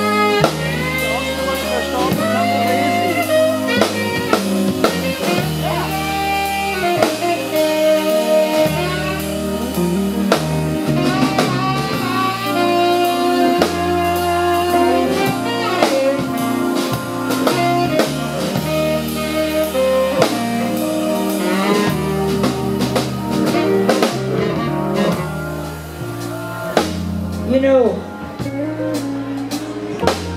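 Live soul band playing a slow number: a saxophone carries long, bending melody notes over drum kit, electric bass and guitar.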